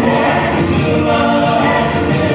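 A mixed show choir of men and women singing a song together into microphones, voices in harmony.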